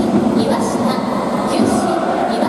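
Reverberant crowd din in a domed baseball stadium: many voices blending into a loud, steady noise with no pauses.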